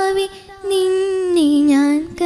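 A girl singing a Malayalam devotional song solo into a microphone, holding long notes. She breaks for a breath about half a second in, then holds a note that steps down in pitch near the end.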